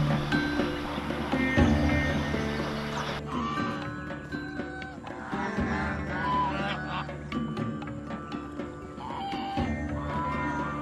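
Background music with a steady drone. From about three seconds in, a flock of domestic ducks quacks over it.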